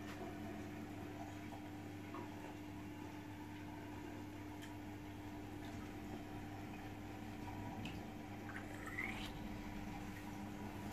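Quiet room tone: a steady low hum with a few faint clicks, and a brief rising squeak near the end.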